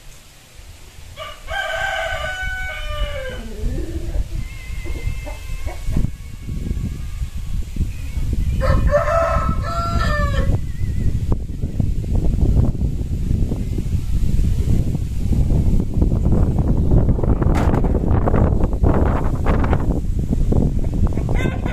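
A rooster crowing twice, about a second and a half in and again about eight seconds in, each crow about two seconds long. A low rumbling noise builds through the second half and becomes the loudest sound, with a few sharp knocks near the end.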